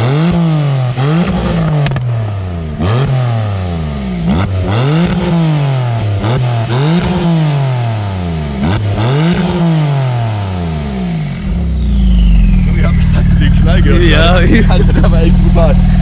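Catless Porsche 991.2 Turbo S 3.8-litre twin-turbo flat-six on a Techart exhaust, revved over and over while standing, about once a second, each rev rising and falling back. The revs are broken by sharp pops and bangs on the overrun: the tune has its cuts programmed out. About eleven seconds in, the revving stops and the engine settles into a loud, steady low idle, with a voice laughing near the end.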